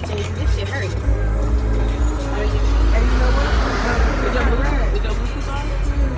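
Steady low rumble of a car's engine and road noise heard inside the cabin, with music and voices over it.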